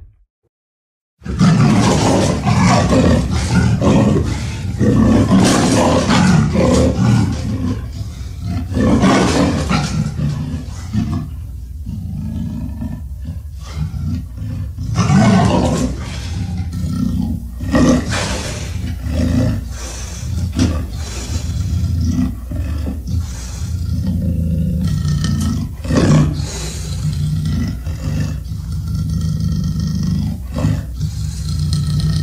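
Tyrannosaurus rex roar sound effect: after about a second of silence, a long run of deep roars and growls begins over a constant low rumble, with the loudest roars swelling up several times.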